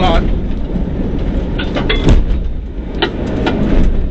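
Rally car driving fast on a dirt track, heard from inside the cabin: a loud, constant rumble of engine and tyres on the loose surface, with sharp knocks about two and three seconds in.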